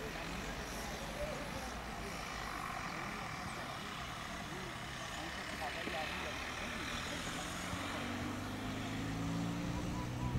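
Road traffic: a car driving past on the road, over a steady low rumble. In the last couple of seconds a vehicle's engine hum comes in and rises slowly in pitch.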